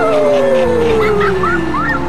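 A long wavering howl that glides slowly down in pitch, with a few short rising chirps about a second in, over background music.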